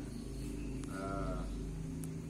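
A man's drawn-out hesitation sound, a held "eh" about a second in lasting about half a second, over a steady low hum.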